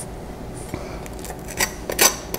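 Table knife scraping and spreading across crusty toasted bread on a plate, with a couple of sharp clicks near the end.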